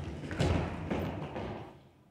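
A group of children scrambling to their feet on a wooden floor: a flurry of thumps and shuffles from feet and knees on the boards, dying away shortly before two seconds in.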